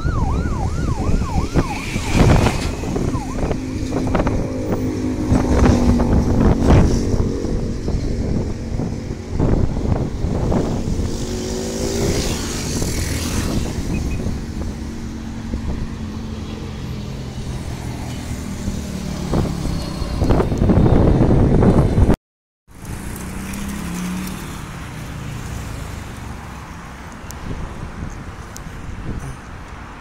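Road traffic on a divided highway: engines and tyres of passing vehicles, including a jeepney and a bus, with a steady engine hum through much of it. The sound drops out completely for a moment about two-thirds of the way through, then quieter traffic noise carries on.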